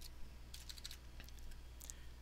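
Typing on a computer keyboard: a scattering of faint keystrokes over a low, steady hum.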